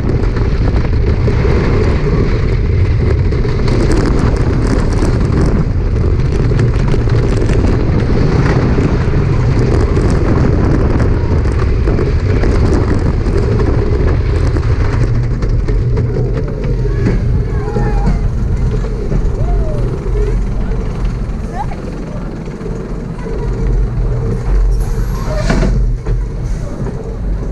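A Great Coasters International wooden roller coaster train running at speed over wooden track, a continuous loud rumble and rattle of wheels and structure. After about 15 seconds it quietens as the train comes onto the brake run, and a brief burst of noise comes near the end.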